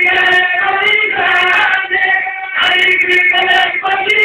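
Voices singing a devotional song in long held notes, with a brief break a little past halfway.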